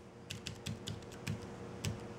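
Keys tapped one by one on a Belkin Bluetooth keyboard made for the iPad Mini: about eight quiet, unevenly spaced key clicks.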